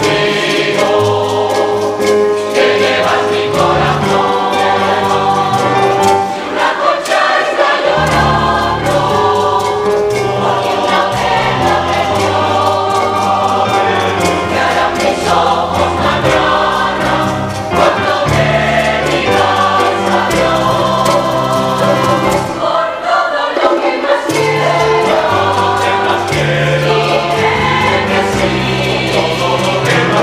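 Mixed choir of men's and women's voices singing a bolero in parts, with a moving bass line beneath the melody and short breaks between phrases.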